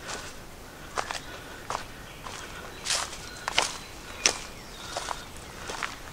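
Footsteps of a person walking down a dirt forest trail strewn with stones and dry leaves, a sharp step roughly every two-thirds of a second at a steady walking pace.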